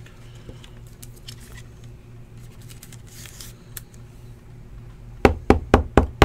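A faint steady hum, then near the end a quick run of sharp knocks, about four a second, as a hard plastic card holder is tapped against the tabletop.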